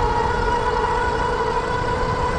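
The e-bike's 1000 W rear hub motor gives a steady, kind of loud whine at about 28 mph. It is one held pitch with an overtone, over wind rush and the rumble of 26x4 in fat tires on pavement.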